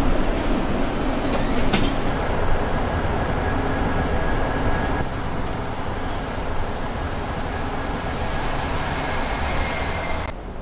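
Mercedes-Benz eCitaro electric city bus driving: steady rolling road and tyre noise, with a faint steady whine above it. There is a single sharp click about two seconds in.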